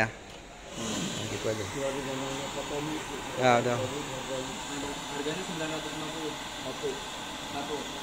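A steady rushing hiss sets in suddenly about a second in and holds even, with men's voices talking indistinctly over it and one short "ya" near the middle.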